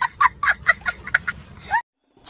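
A small child laughing hard, a fast run of short, high-pitched bursts that cuts off abruptly just before the end.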